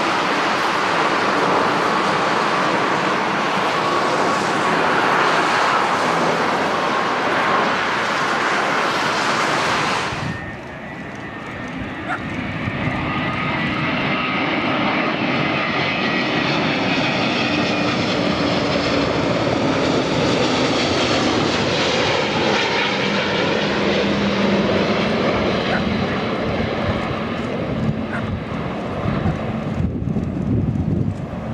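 Jet airliner engine noise, a steady loud rush: first a four-engine Airbus A340-500 at takeoff power as it climbs. About ten seconds in it cuts abruptly to an Airbus A350-900 flying low, its twin engines building again after a brief dip.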